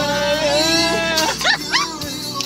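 A man singing loudly along to music playing in a car: one long held note, then a few quick sliding notes near the end.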